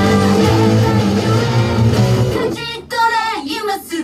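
Electric guitars playing along with a loud rock song. About two and a half seconds in the band drops out, leaving a high singing voice with a few guitar notes in a short break.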